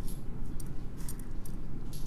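Faint light clinks of small gemstone beads being put down and picked up, over a steady low hum.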